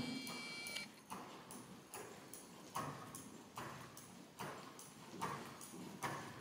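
Faint hoofbeats of a ridden horse on a soft sand arena surface, soft thuds in a steady rhythm a little under once a second.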